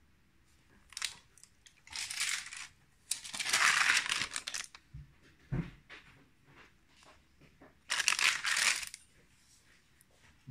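Pages of a stamp stockbook being handled and turned: several bursts of paper rustling, the longest about three to four and a half seconds in. There are a couple of soft knocks about five seconds in.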